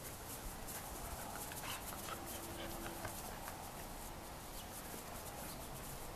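Two poodle puppies play-wrestling over a plush toy on grass: quick scuffling and rustling with soft dog noises, and one short steady note about two seconds in.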